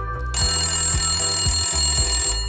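A bell rings continuously for about two seconds, starting shortly after the timer reaches zero: the time's-up signal for the question. A background music track with a steady beat plays under it.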